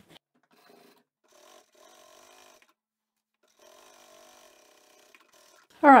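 Sewing machine running faintly in two short spells, each about a second long, while topstitching along a seam.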